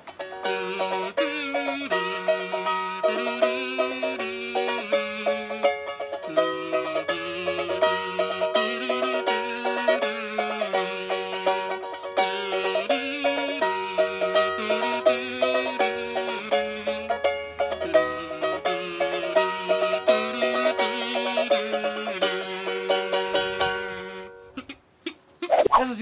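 A metal kazoo buzzing a melody over a strummed ukulele, both played by one person. The tune runs without a break and stops about two seconds before the end.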